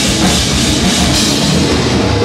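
Live heavy metal band playing loud: electric bass and a drum kit with cymbals, dense and unbroken.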